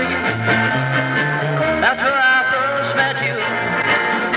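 Rockabilly garage record playing on a turntable: a stretch between sung lines, with a stepping bass line under guitar.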